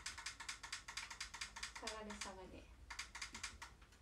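A fast, even run of small clicks, like keys or buttons being pressed in quick succession, stopping about two seconds in for a short vocal sound, then a few more clicks before it goes quiet.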